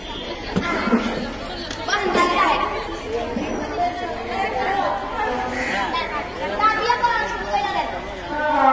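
Schoolgirls' voices chattering, several talking over one another.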